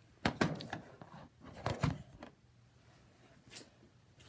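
Handling noise from the recording iPad being moved and set down: two short clusters of knocks and rubbing about a second apart, then a faint scrape near the end.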